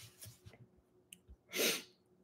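A short, sharp breath through the nose, about one and a half seconds in, after a few faint ticks.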